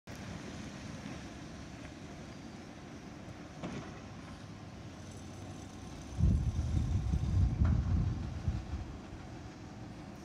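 Autocar front-loader garbage truck's diesel engine running at a distance as the truck drives away. About six seconds in, a much louder, uneven low rumble starts suddenly and fades out by about nine seconds.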